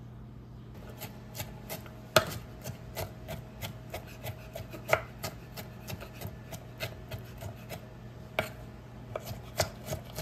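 Kitchen knife chopping boiled bamboo shoot on a wooden cutting board. The blade knocks on the board in quick, uneven strokes, about three a second, starting about a second in, with a few harder strikes.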